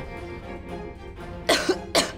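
A woman coughing: two sharp coughs about a second and a half in, over soft background music.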